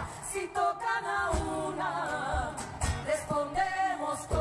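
Live concert performance of a protest song: female voices singing with a large women's choir, over a low drum beat.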